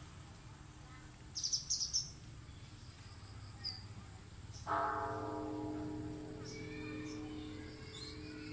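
Birds chirp a few times, then about halfway through a large pagoda bell is struck once and rings on with a long, slowly fading hum.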